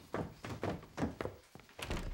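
Footsteps thudding on wooden stairs, a steady run of about two or three steps a second.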